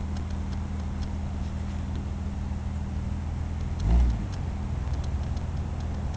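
Engines of a Jeep Cherokee and a Land Rover Discovery 2 running steadily under load as the two pull against each other on a tow strap. About four seconds in there is one brief, louder surge.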